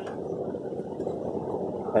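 Steady, dull background noise outdoors under an overcast sky: an even low hiss with no distinct events.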